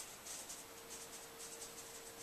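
Faint, quick strokes of a teasing comb backcombing a section of hair near the scalp, several strokes a second.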